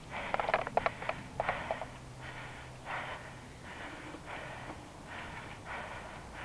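A cyclist breathing hard after riding: short, regular breaths close to the microphone, about one every two-thirds of a second. A quick run of light clicks comes in the first two seconds.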